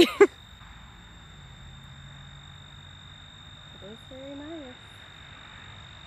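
Quiet field ambience filled by a steady, high-pitched insect drone, with a brief hummed voice about four seconds in.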